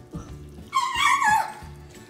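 A young child's high-pitched squeal, about a second long, wavering and then falling in pitch.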